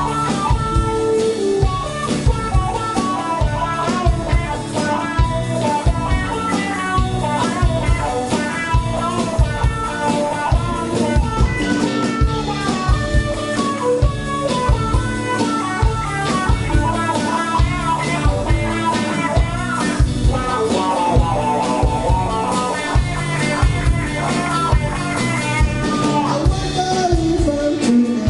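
Live band playing an instrumental passage: electric guitar to the fore over a drum kit with a steady beat, in a blues-rock style.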